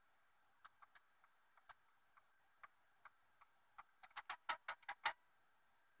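Faint clicks from an old radio scanner's front-panel buttons being pressed, scattered at first, then a quick run of about eight clicks near the end.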